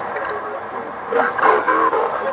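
A man's recorded greeting played back through a voice-changer app's monster effect, the voice distorted to sound like a monster, louder from about a second in.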